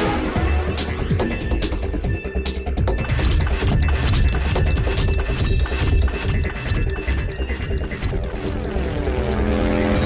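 Fast action music with a driving beat and held synth tones, mixed with the engine sound effect of a futuristic hover-motorbike as it races along.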